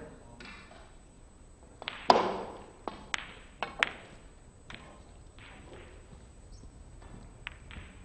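Snooker balls clicking: the cue strikes the cue ball about two seconds in, followed at once by the loudest crack of ball on ball, then a few sharper clicks over the next two seconds as balls collide, with fainter knocks later.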